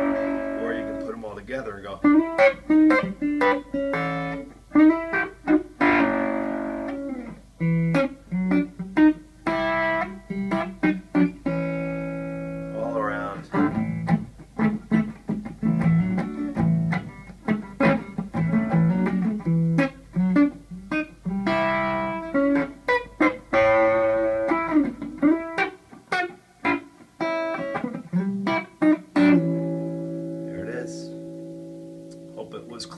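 Electric guitar playing a string of major-scale double stops, two notes plucked together with pick and middle finger, moving in short quick phrases. About 13 seconds in there is a rising slide.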